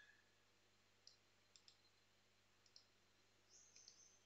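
Near silence with about six faint, scattered clicks from computer mouse and keyboard use.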